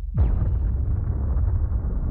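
A cinematic trailer sound effect: a fast falling sweep about a quarter second in, dropping into a deep, sustained rumble.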